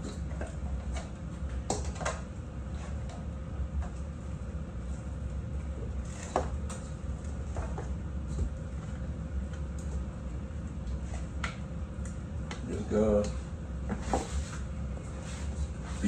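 Scattered knocks and clicks of cookware and cupboards being handled in a kitchen, over a steady low hum. A brief voice comes in about 13 seconds in.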